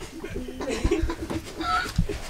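A person laughing: a quick run of short, repeated vocal sounds with a brief higher-pitched sound near the end.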